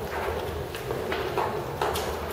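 Footsteps on a stone floor, several scattered steps, over the low hubbub of a crowd, echoing in a large church nave.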